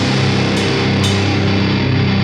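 Crust punk band playing live: a held, distorted chord rings out, with two cymbal crashes about half a second and one second in.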